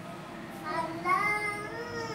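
A child's high voice singing a long, drawn-out line that starts about half a second in and bends slowly in pitch.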